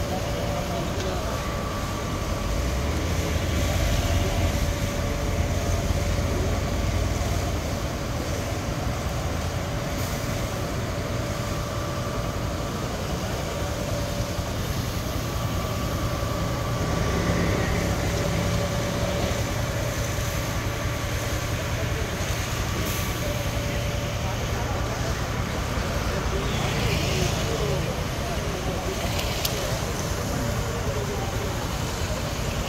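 Fire engine's engine and pump running steadily while feeding a hose line: a continuous low hum with a faint held tone over it.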